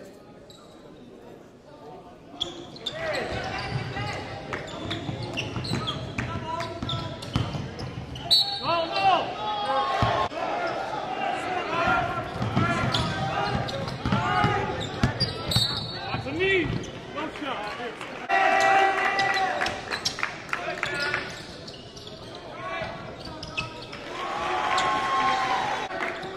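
Live basketball game sound in a gym, growing louder after about two seconds. A ball bounces on the hardwood, sneakers squeak, and spectators and players call out and shout.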